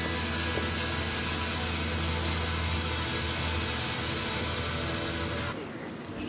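Background music with a strong, held low bass, thinning out and dropping in level near the end.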